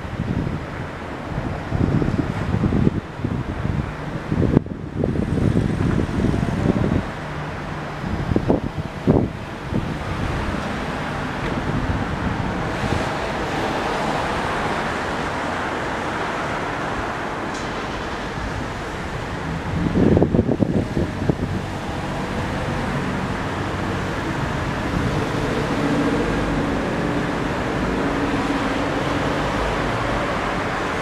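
City street traffic running by steadily. Wind buffets the microphone in gusts through the first ten seconds and again about twenty seconds in.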